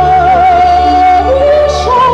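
A woman singing a long held note with vibrato, then stepping down to a lower note and rising again near the end, over sustained instrumental accompaniment.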